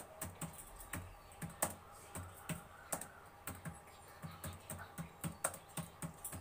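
Computer keyboard being typed on: single keystrokes clicking at a slow, uneven pace of about three a second as a line of text is entered.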